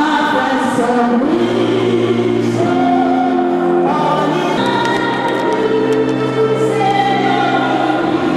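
A choir singing slow, long-held chords in several voice parts, the harmony moving to a new chord every second or two.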